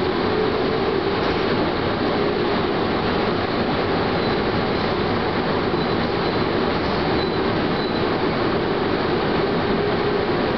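Chichibu Railway electric train running along the line, heard from the front of the car: steady rumble of wheels on rail with a steady low hum. Faint high squeals from the wheels come and go about halfway through as the train rounds a curve.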